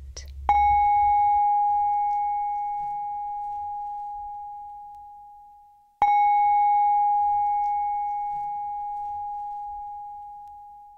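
A small singing bowl struck twice, about half a second in and again about six seconds in. Each strike gives one clear, steady ringing tone with fainter higher overtones that slowly fades away.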